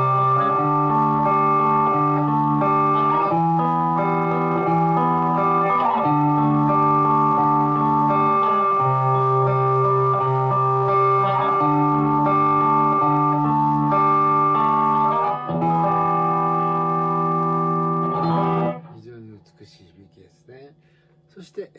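Electric guitar (Fujigen Stratocaster) played through a Zoom G2.1Nu multi-effects unit on its MB Shock patch, picking an arpeggio across the 5th, 4th and 3rd strings. The notes ring into each other, the chord changes every two to three seconds, and the playing stops abruptly about a second before the end.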